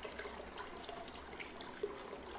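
Faint trickling and bubbling of aquarium water, a steady run of small scattered drips and bubbles.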